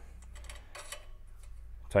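Faint metal clicks and a short scrape as a steel blade guard is slid into a band saw's upper blade guide, over a low steady hum.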